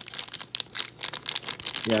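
Foil trading-card pack crinkling and crackling in the hands as it is torn open, a quick irregular run of crackles.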